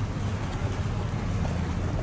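Wind buffeting a handheld camera microphone outdoors: a steady low rumble.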